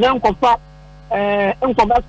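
Speech in short phrases, with one drawn-out held syllable about a second in, over a steady electrical mains hum.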